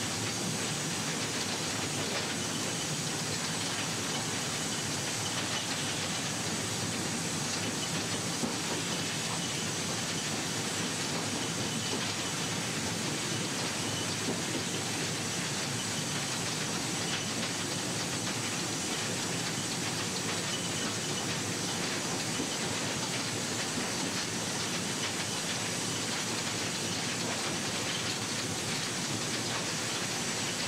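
Inside the cab of a Mikado steam locomotive: a steady, even hiss of steam mixed with the train's running noise.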